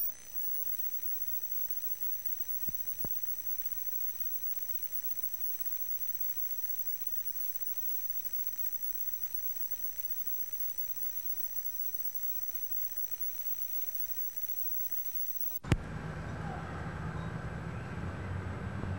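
Dropped-out videotape audio: a steady faint hiss with a thin high whine, and two small clicks about three seconds in. Near the end a sharp click as the sound cuts back in, giving louder outdoor ambience with a low rumble.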